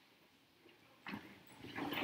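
Rustling and shuffling of people getting to their feet, with a short sharp sound about a second in and the noise growing louder toward the end.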